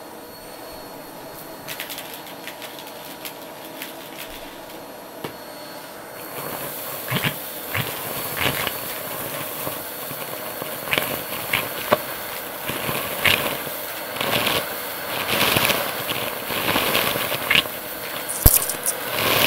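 Vacuum cleaner running steadily; about six seconds in, its hose nozzle meets a heap of grit and debris on carpet and the suction grows louder, with crunchy crackling and rattling as the bits are sucked up the hose, denser toward the end.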